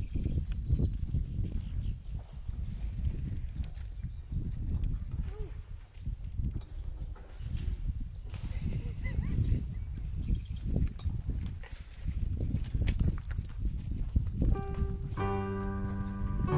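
Low, gusty rumble of wind buffeting the microphone, with faint background voices. Near the end, music starts with steady held notes.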